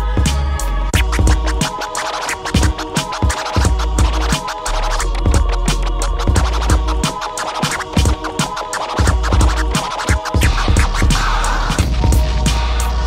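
Turntable scratching over a backing beat: a sample on a vinyl record worked back and forth by hand on a Technics deck and chopped with the mixer's crossfader in quick, rhythmic cuts.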